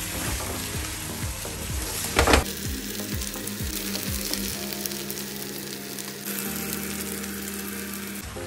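Fried chicken pieces and green capsicum sizzling in hot oil in a non-stick frying pan while being stirred with a spatula, with a brief louder clatter about two seconds in.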